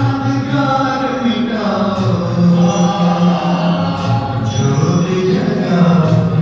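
Devotional singing in long held notes, with musical accompaniment.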